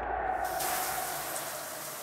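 Shower water spraying in a tiled shower, a steady hiss that starts about half a second in.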